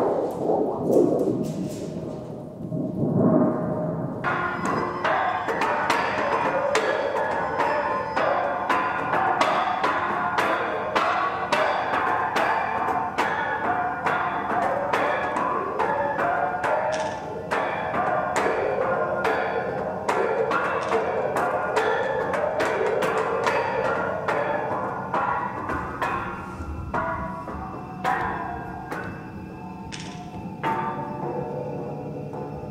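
Metal sonic sculptures being played: a low ringing with a wobbling swell dies away over the first few seconds. From about four seconds in comes fast, dense mallet playing on a sculpture of long thin metal rods, the many ringing strikes running together into a continuous metallic clatter.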